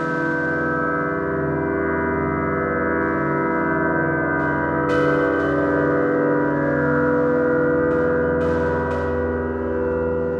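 Experimental electronic drone music: dense layers of sustained tones held steady, with faint brief hiss about five and eight seconds in.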